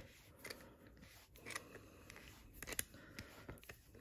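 Faint, scattered small clicks and scrapes from a hand-held dart re-pointer tool being tightened by hand, with one sharper click late on.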